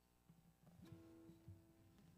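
Faint acoustic guitar: a few soft plucked notes, then one note held ringing from about a second in.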